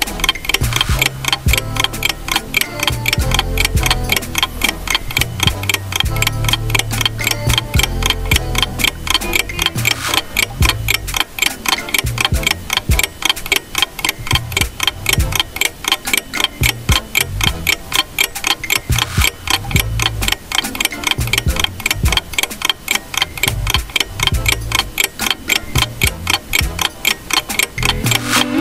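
Clock-ticking sound effect, fast and even, counting down the time to guess the picture.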